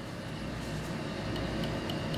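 A cloth rubbing over a metal drawer pull as it is hand-polished: a soft, even scrubbing noise that grows slightly louder.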